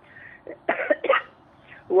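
A man coughing in a few short bursts, a small one about half a second in and a stronger pair just under a second in.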